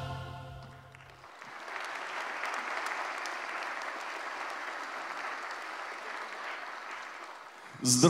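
The music's final held chord dies away in the first second. Then a concert-hall audience applauds steadily until near the end.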